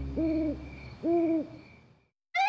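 An owl hooting twice, each hoot a smooth call that rises, holds and falls away, with the sound fading out near the end.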